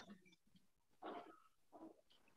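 Near silence, broken by two faint brief sounds, one about a second in and one just before the end.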